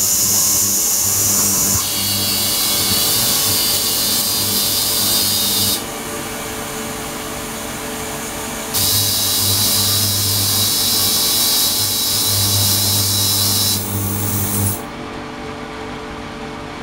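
Ultrasonic tank running with its water circulating: a loud high hiss and whine over a low buzz. The sound cuts out for about three seconds in the middle, comes back, and drops away again shortly before the end.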